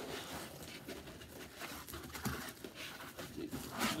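Rustling and scraping of packing material: foam end blocks and a plastic bag being handled and pulled against a cardboard box, with small scattered clicks and knocks.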